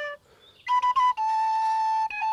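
Small wooden end-blown flute played solo. A held note ends just after the start, and after a short breath a new phrase begins with a few quick ornamented notes, then settles into a long held note.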